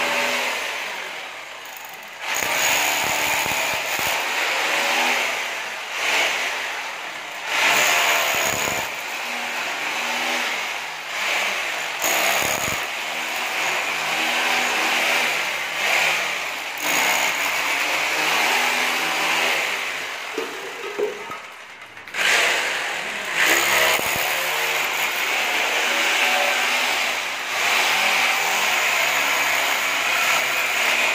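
Corded electric drill boring holes into a plastered masonry wall at floor level. It runs in long stretches, with a few short pauses where the motor slows and spins back up as the bit is moved to the next hole.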